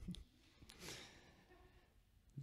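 Near silence in a lecture hall, broken by a short exhale near the presenter's microphone about a second in, after a faint low thump at the start.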